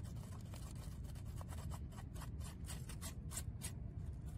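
Fingers scratching and rubbing on a squash leaf to scrape off squash bug eggs: a quick run of crisp scratching clicks over a steady low rumble.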